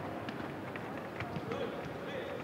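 Football players' footfalls on a grass pitch during a warm-up, scattered short thuds, under indistinct voices and calls.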